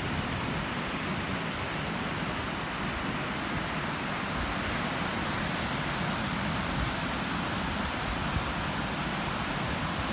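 Steady wash of breaking ocean surf, with wind gusting on the microphone as a low, uneven rumble.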